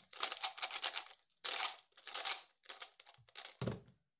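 Skewb puzzle cube being turned fast during a speedsolve: rapid runs of plastic clicking and scraping in several quick bursts. Near the end come a couple of soft thuds as the solved cube is put down and the timer is stopped.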